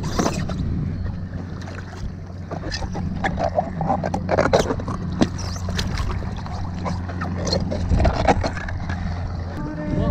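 Water splashing and irregular knocks and rustles against an inflatable paddle board as dive fins are pulled on and a finned foot works in the water, over a steady low hum that cuts off shortly before the end.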